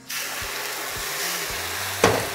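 Rum poured into a hot pan of caramel and bananas, setting off a sudden, steady sizzle.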